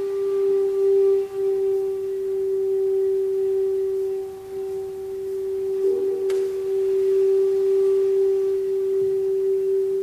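Kyotaku, the Zen end-blown bamboo flute, holding one long, steady, nearly pure low note with faint overtones. The note dips briefly twice in the first half, swells slightly about six seconds in, and fades away at the end.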